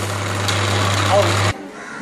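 Discarded electric massage machine shaking a home-made earthquake vibration table: a steady low hum with the rattle of the slate platform and the toy blocks on it. It cuts off suddenly about one and a half seconds in.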